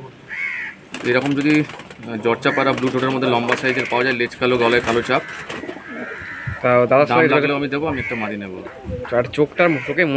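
Domestic pigeons cooing, heard under people talking.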